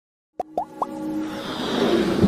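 Animated logo intro sting: three quick upward-gliding pops, then a swelling electronic build-up that grows steadily louder. It starts about a third of a second in.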